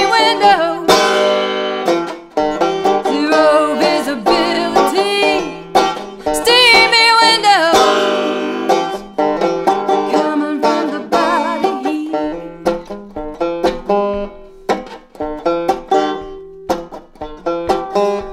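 An out-of-tune five-string resonator banjo picked steadily. A woman's voice sings over roughly the first half, wavering and sliding in pitch, then the banjo carries on alone.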